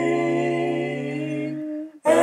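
A cappella vocal harmony, wordless voices holding a steady chord. The lowest voice drops out about one and a half seconds in and the upper voices fade away just after.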